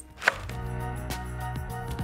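Chef's knife chopping hazelnuts on a wooden cutting board: one sharp chop a quarter second in, then lighter chops.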